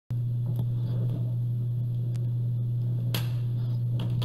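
A steady low hum with a few faint clicks.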